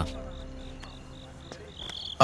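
Cricket chirping in the background: short, high chirps repeating about four times a second, quiet and even.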